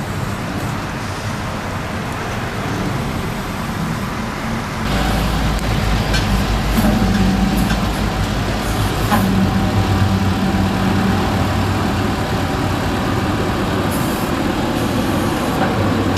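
Flatbed tow truck's engine running as its winch pulls a crashed car up onto the tilted bed. About five seconds in, the engine rises to a louder, deeper rumble and a steady whine joins it.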